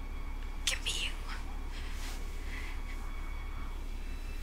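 Quiet whispered dialogue from the TV episode, in two short breathy phrases, over a steady low hum.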